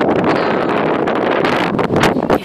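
Wind buffeting a handheld camera's microphone: a loud, steady rushing rumble.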